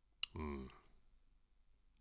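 A single sharp click, then a man's short, low 'mm' hum.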